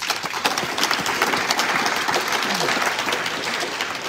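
Audience applauding: a steady clatter of many hands clapping.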